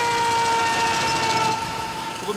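A long vehicle horn blast held on one steady pitch, cutting off about one and a half seconds in.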